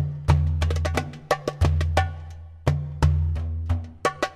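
Darbuka (goblet drum) played solo in a quick Arabic rhythm. Deep booming dum strokes alternate with sharp, ringing tek strokes and fast light fills.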